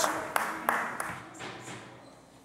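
Scattered applause from members in a legislative chamber, a few sharp claps standing out, dying away.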